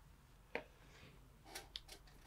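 Near silence: room tone with one faint click about half a second in and a few softer ticks near the end.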